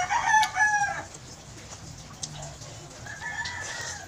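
A rooster crowing once, a loud pitched call of about a second at the start, with a fainter steady high tone near the end.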